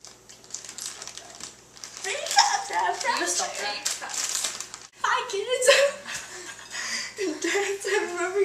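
Girls' voices talking indistinctly, with words too unclear to make out. The first two seconds are quieter, and the talk breaks off briefly about five seconds in.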